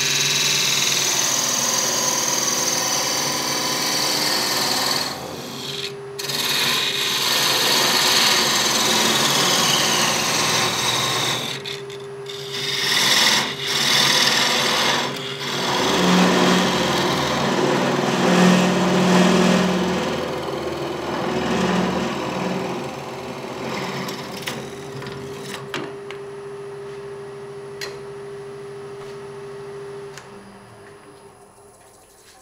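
Wood lathe spinning with a steady motor hum while a flat scraper cuts a small jarrah lidded box, a continuous scraping hiss broken by a few brief gaps where the tool lifts off. Near the end the cutting stops and only the lathe's hum is left, growing fainter.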